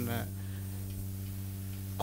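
Steady low electrical hum from the microphone and sound system. A man's voice trails off at the very start.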